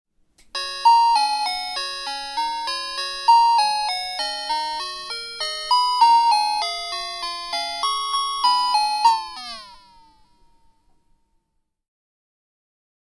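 Intro jingle: a quick melody of bright, bell-like notes, each ringing and fading, ending about nine seconds in with a falling shimmer that dies away.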